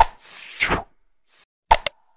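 Like-and-subscribe end-screen sound effects: a sharp pop at the start, then a whooshing swish lasting under a second, a faint short swish, and two or three quick clicks near the end. They are part of a short effects sequence that repeats.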